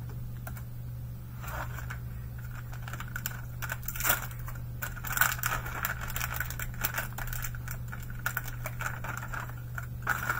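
A foil trading-card pack being torn open and handled: the wrapper crinkles, and the hard plastic slab of a graded card inside clicks and clatters in a run of irregular small clicks.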